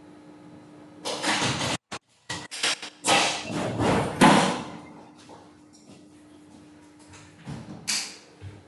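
Loud, rough bursts of noise through a video-call audio feed, starting about a second in and fading out after about four seconds. The sound cuts out completely for a moment twice near the two-second mark, and a faint steady hum runs underneath.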